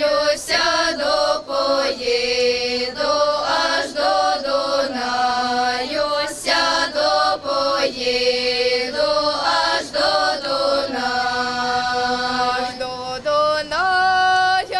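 Girls' folk vocal ensemble singing a Ukrainian folk song unaccompanied, several voices in harmony on long held notes.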